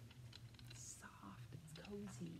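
Faint rustle of a knit sweater and a few light clicks of its plastic hanger as it is handled.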